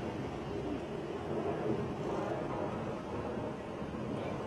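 Steady roar of a burning bus's flames, an even rushing noise that holds constant throughout.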